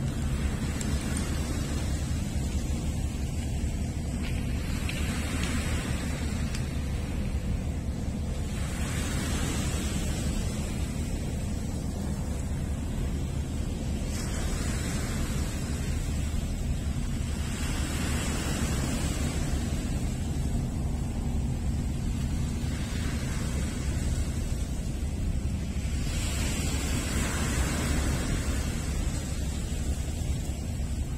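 Small waves washing onto a pebble shore, swelling and fading every few seconds, over a steady low rumble of wind on the microphone.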